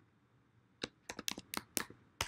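Computer keyboard keys being typed in a quick burst of about seven sharp clicks, starting a little less than a second in.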